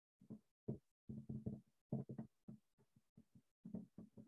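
Faint, broken fragments of a man's low voice muttering under his breath: a dozen or so short sounds with silence in between, too quiet and clipped to make out words.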